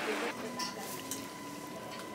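Inside a commuter train carriage: a steady high electrical tone from the train's equipment over a low background of faint passenger voices, following a brief patch of even noise at the very start.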